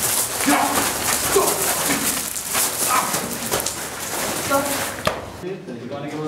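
An animal-like monster growl, a film sound effect: harsh and noisy, running until it cuts off suddenly about five and a half seconds in.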